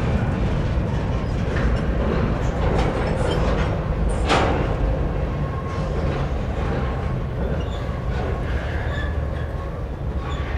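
CN potash train's covered hopper cars rolling across a steel girder bridge: a steady rumble of wheels on rail, with faint high wheel-squeal tones and one sharp clank about four seconds in. The sound slowly fades.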